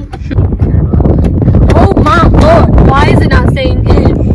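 Wind buffeting the microphone in the open back seat of a convertible with the top down, a loud steady rumble. A girl's high-pitched voice rises over it in the middle.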